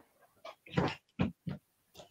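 Four short, fairly quiet vocal bursts from a person within about a second.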